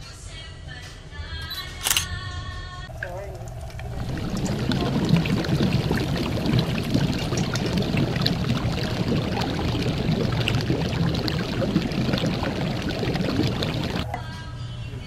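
Bagnet (pork belly) sizzling in deep-frying oil, a steady dense crackle that starts about four seconds in. Before it, background music plays, with a sharp click about two seconds in.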